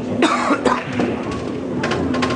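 A person coughing: a strong cough about a quarter second in, then a shorter one just after, over a steady low hum.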